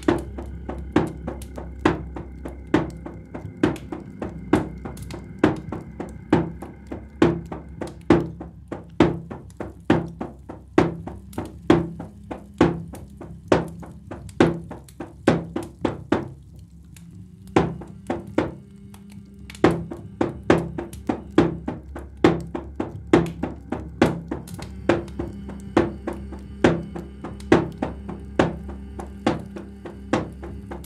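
A drum beaten in a steady, repeated pulse of sharp strikes that ring briefly, over a low sustained drone. The beating breaks off for about a second near the middle, then resumes.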